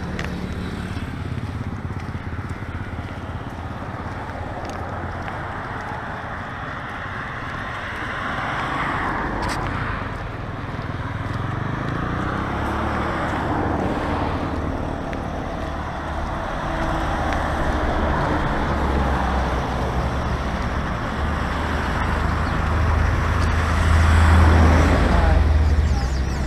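Road traffic on the highway beside the verge: a steady wash of passing vehicles, with a low rumble growing louder near the end as a vehicle passes close.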